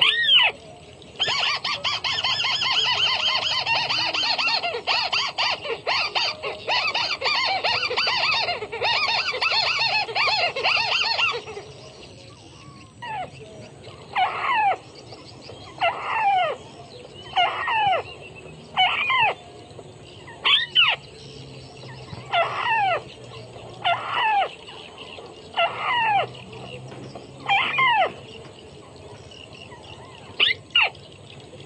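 White-browed crake calls: a loud, fast chattering for about ten seconds, then a run of single notes that each slide sharply down in pitch, about one every second and a half.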